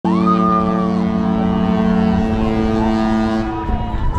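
Cruise ship's horn sounding a long, deep chord that cuts off about three and a half seconds in, with a higher tone rising over it at the start.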